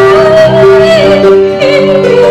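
A woman singing a church praise song into a microphone over keyboard accompaniment, holding long notes with vibrato.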